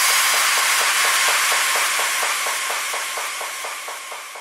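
Synthesized white-noise wash closing an electronic house track: a steady hiss with a faint pulse about four times a second beneath it, fading out toward the end.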